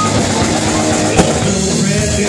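Live rock band playing an instrumental passage with electric guitar and a drum kit, loud and dense, with a sharp drum hit about a second in.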